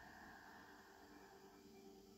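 Very faint, slow breathing close to the microphone: one long breath that fades out near the end, over a faint low steady hum.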